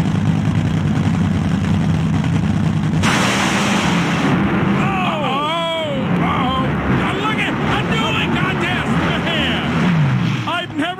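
Two nitromethane Top Fuel dragsters idling at the starting line, then launching about three seconds in with a sudden loud roar of full-throttle engines, heard through a TV broadcast.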